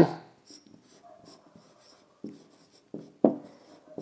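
Marker pen writing on a whiteboard: a series of short, faint strokes, the loudest just after three seconds in.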